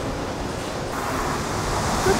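Steady street noise outdoors: wind rushing on the microphone over the sound of passing road traffic, slowly growing louder.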